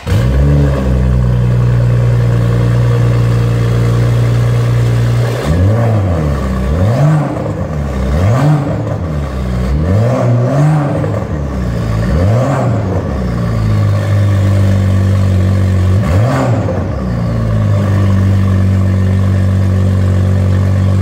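Exhaust of a BMW M135i with a catless downpipe and a tune to about 400 hp, heard from behind the stationary car. It idles steadily, is revved in a quick run of about eight blips in the middle, each rising and falling, then idles again with one more blip before settling back to idle.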